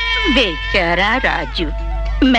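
Baby crying in loud, wavering wails, about three cries in quick succession, over soft background music.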